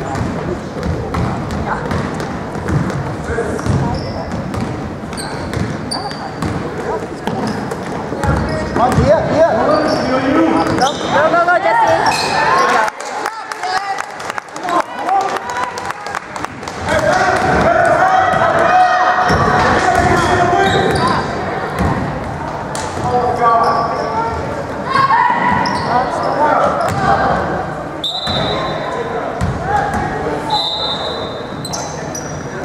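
Basketball bouncing and players' feet on a hardwood gym floor during a game, with voices shouting and calling out, all echoing in a large hall.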